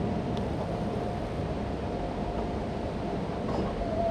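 Steady low rumble of lecture-room background noise, like ventilation, with two faint clicks, one about half a second in and one near the end.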